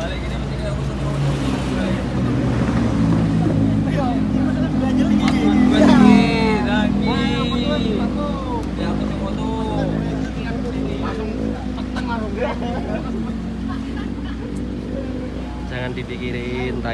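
A motor vehicle engine running with a steady low hum that swells for a moment about six seconds in, under people's indistinct talk.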